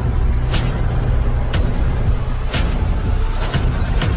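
Cinematic intro sound design: a continuous deep rumble with a sharp hiss-like hit about once a second, four in all.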